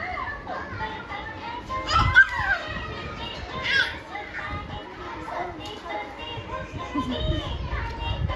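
Young children's excited shrieks and chatter, with the loudest squeal about two seconds in.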